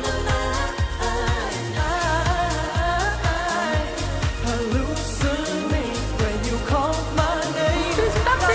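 Live pop performance: a woman's lead vocal, blended with backing vocals, over a steady electronic dance beat with a thudding kick drum.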